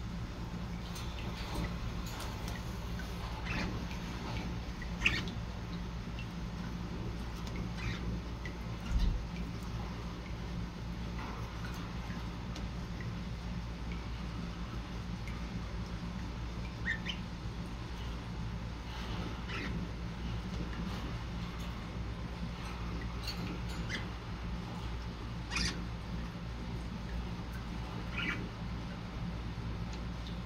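Budgerigar giving scattered short, high chirps every few seconds over a steady low background hum.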